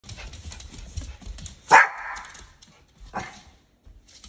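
Small Pomeranian barking twice, a loud bark just before the middle and a softer one about a second and a half later, with a patter of small clicks from its claws on a hard floor before the first bark.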